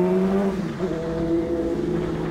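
Honda Hornet's inline-four engine running under way, its pitch climbing slightly and then dropping just after half a second in, then holding steady.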